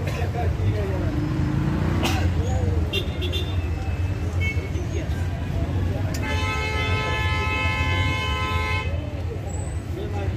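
A vehicle horn sounds one long steady blast of nearly three seconds, starting about six seconds in, over a constant rumble of road traffic and scattered voices.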